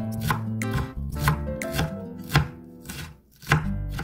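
Chef's knife chopping a large green onion on a cutting board: a run of sharp knife strikes against the board, uneven in pace, with light background music under it.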